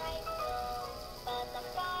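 A light-up plush snowman toy plays a song through its small built-in speaker: a melody of held notes that step from one pitch to the next.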